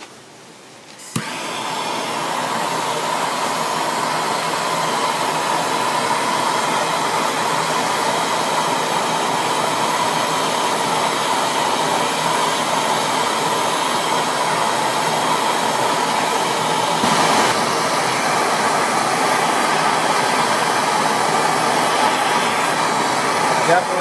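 Propane torch flame burning steadily, starting suddenly about a second in.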